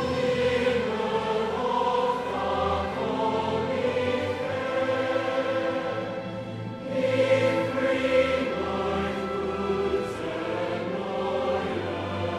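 Large choir singing with orchestral accompaniment of strings and harps, growing louder about seven seconds in.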